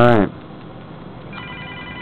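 A telephone ringing, a set of steady high electronic tones that begins a little over a second in. At the very start a brief voice sound falls in pitch.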